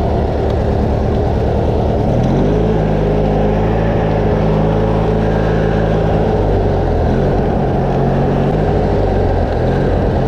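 The engine of a Craftsman riding lawn tractor running loudly while the tractor is driven. Its rapid pulsing settles into a steady, even drone from about two seconds in until about seven seconds in, then turns pulsing again.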